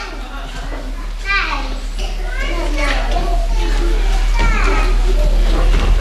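Children's voices calling out from a pantomime audience, several overlapping and growing louder, over a steady low electrical hum.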